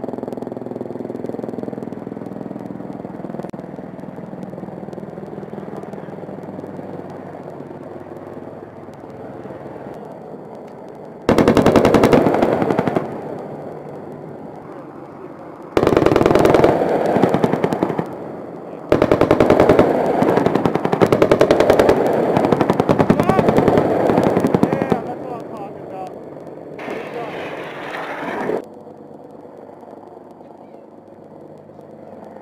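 A steady low drone, from a distant helicopter, slowly fades. About eleven seconds in, rapid automatic gunfire starts in four long bursts, the longest running about six seconds.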